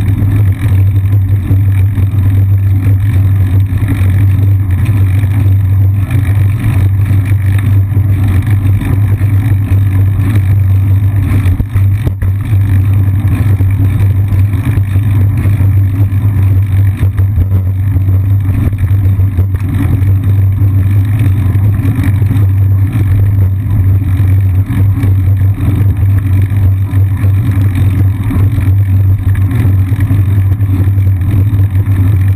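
Steady, loud low rumble of wind buffeting and road vibration picked up by a seat-mounted GoPro Hero 2 on a moving bicycle, with no breaks.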